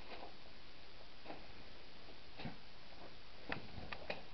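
Footsteps crunching on a rubble-strewn concrete floor, short irregular clicks about one a second with the loudest near the end, over a steady hiss.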